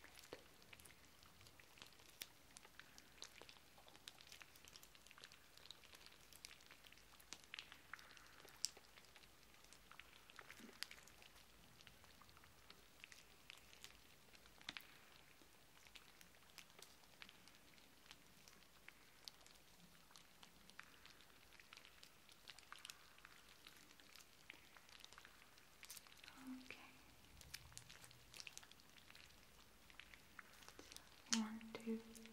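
Very quiet, scattered soft crackles and light taps of hands and fingertips moving close to the microphone during a mimed face massage.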